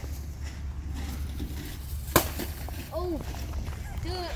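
Egg-drop contraption of plastic bottles and a milk jug hitting the ground after a drop from a height: one sharp impact about two seconds in, over a steady low rumble.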